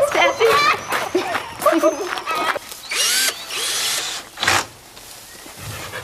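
Hens clucking and cackling in short, rapid, pitched calls as they are carried into a new coop. A noisy rustling burst comes about three seconds in, then a brief knock.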